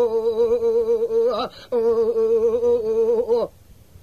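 A male Kurdish dengbêj singing unaccompanied, holding two long, wavering, ornamented notes with a short break for breath between them. The voice stops about three and a half seconds in.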